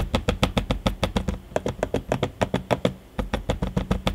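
HP Omen 17 laptop trackpad being clicked rapidly by a finger, about eight to ten sharp clicks a second with a short pause about three seconds in. The clicks sound less securely fastened to the chassis than the Omen 15's quiet trackpad, as the reviewer hears it.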